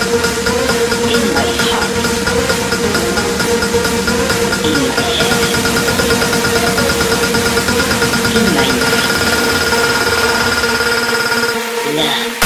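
Breakdown section of an electronic dance (circuit/guaracha) DJ mix: a dense, steady buzzing synth drone with several held high tones and a few short gliding sounds over it. The bass falls away just before the end.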